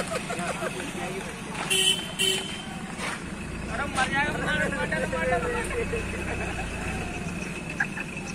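Street traffic: a vehicle horn toots twice about two seconds in, and an engine rumbles past through the middle, under background voices.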